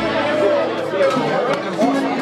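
People's voices chattering over an Eagle piano accordion that holds sustained notes.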